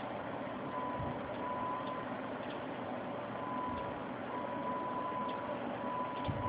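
Steady background hiss with a thin high-pitched whine that switches on and off every second or so, and a few faint clicks.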